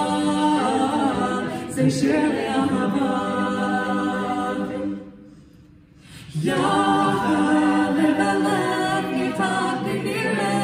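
Mixed-voice a cappella group singing, a lead singer at the microphone over backing voices. About five seconds in the singing breaks off for just over a second, then the group comes back in.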